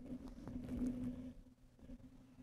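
Shirt fabric rubbing against a clip-on microphone: a soft rustling in the first second or so, fading out, over a steady low hum.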